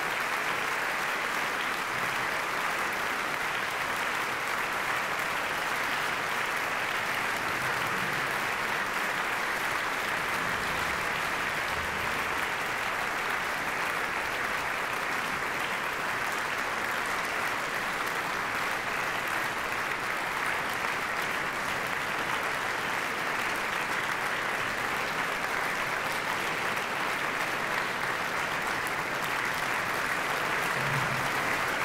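A large concert-hall audience applauding steadily.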